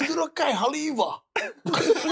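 Men laughing in several short bursts.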